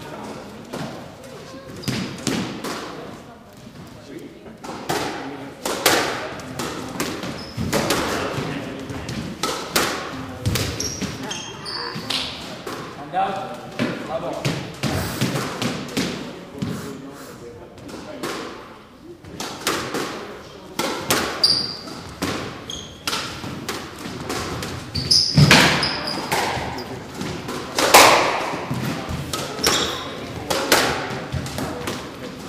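Squash ball striking the walls and floor and being hit by rackets, a string of sharp thuds and smacks echoing in the enclosed court. A few brief high squeaks of shoes on the wooden floor come through.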